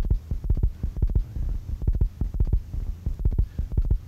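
Deep, rhythmic thumping, about two beats a second and often in close pairs, over a steady low hum.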